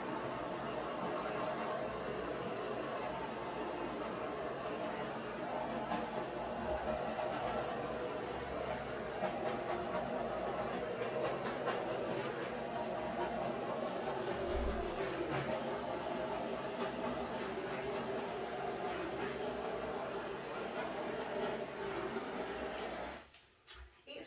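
Handheld gas torch burning with a steady hiss as its flame is passed over wet acrylic paint to take out air bubbles. The flame cuts off suddenly near the end.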